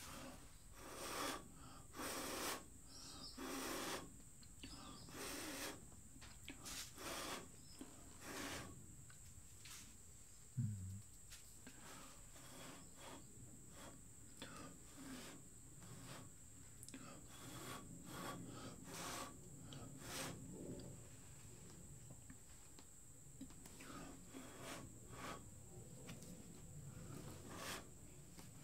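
Short puffs of breath blown by mouth across wet acrylic paint on a canvas to push the paint out, repeated about once a second. The puffs are strongest in the first ten seconds and weaker later, with a brief low hum about ten seconds in.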